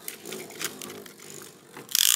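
Beyblade Burst tops spinning on a plastic stadium floor: a steady whir broken by several sharp clicks as the tops knock together, with a loud clash right at the end.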